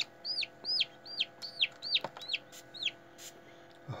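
Hatching chick peeping from its pipped egg in an incubator: a run of about eight short, high peeps, roughly two a second, each rising then falling in pitch.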